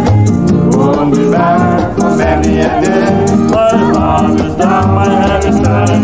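Calypso band recording playing continuously: a shaker ticks out a steady beat over a repeating bass line and a moving melody line.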